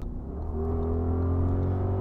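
Audi RS Q8's twin-turbo 4.0-litre V8 pulling under throttle: a deep, steady drone that comes in suddenly, its pitch creeping slowly upward as it gets gradually louder.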